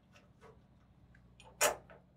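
Faint small clicks of a galvanized steel bracket being handled against a steel strut channel, with one louder short clack about one and a half seconds in.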